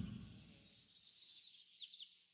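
Faint, high bird chirps, several short calls scattered over near quiet, as ambient birdsong in a cartoon soundtrack.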